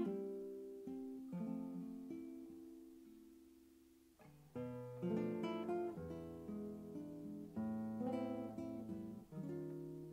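Dan Kellaway cutaway nylon-string classical guitar with a spruce top and rosewood body, played solo. A chord strummed at the start rings and fades for about four seconds, then chords and melody notes come more often from about four and a half seconds in.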